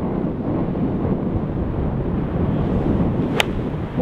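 Wind rushing over the microphone, then a single sharp click about three and a half seconds in as a wedge strikes a golf ball off an artificial tee mat.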